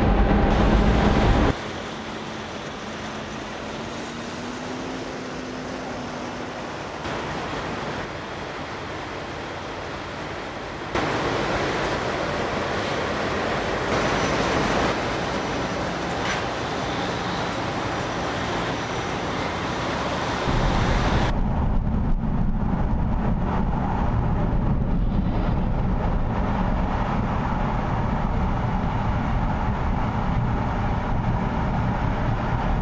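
Road traffic noise: a steady wash of passing vehicles, with a low rumble. It changes suddenly in loudness and tone a few times, most markedly about 21 seconds in, when the rumble grows heavier.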